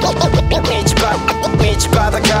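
Hip hop beat with turntable scratching over it: a record scratched back and forth in quick rising and falling strokes over a steady bass and drum groove.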